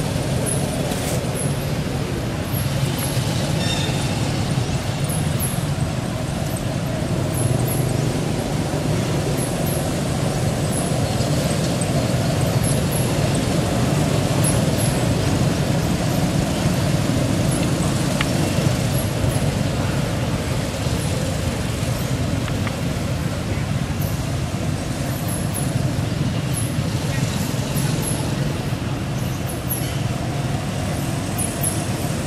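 A steady, low rumble of outdoor background noise, with faint high ticks every second or so.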